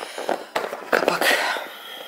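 Plastic snap-on lid being pressed down onto a plastic food container, giving a series of sharp clicks and crackles. The lid is worn and no longer snaps shut firmly.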